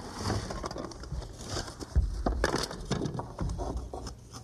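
Thin wooden shim shingles being handled and slid into the gap behind a door jamb: irregular wood-on-wood scraping, rustling and light knocks, with a dull thump about two seconds in.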